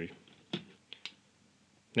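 A single sharp click about half a second in, then two faint ticks, from small hard objects being handled on a desk.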